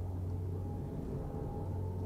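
A steady low hum with faint higher tones held under it, and no other sound.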